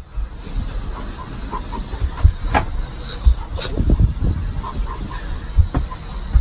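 Steady low rumble inside a private jet's cabin, picked up on a phone, with a few sharp knocks and thumps from movement about the cabin.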